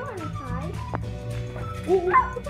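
High whining calls that glide quickly up and down in pitch, likely from a pet animal, over steady background music.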